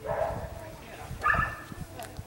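A dog barking twice, the second bark louder, about a second after the first.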